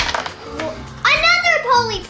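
A child's high-pitched excited exclamation, sliding up and then down, about a second in, over background music. Toy-box packaging rattles and rustles at the start as the tissue is lifted off.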